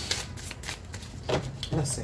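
A deck of angel oracle cards being shuffled by hand: a quick series of short papery flicks and taps as the cards slide and knock together.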